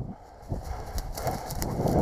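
Dry grass, twigs and branches rustling and crackling irregularly as someone pushes through brush on foot, with wind buffeting the microphone.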